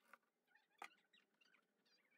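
Chef's knife slicing through an onion and knocking on a plastic cutting board: two faint strokes, the louder one a little under a second in, with faint crisp squeaks of the onion layers between them.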